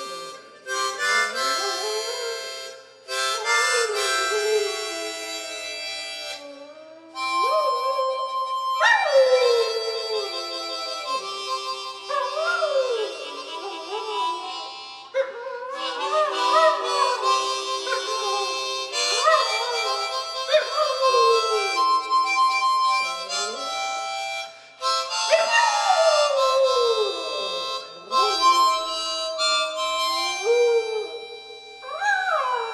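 Harmonica played in chords while a small dog howls along, its howls sliding up and falling away in long wavering glides. The playing stops briefly a few times between phrases.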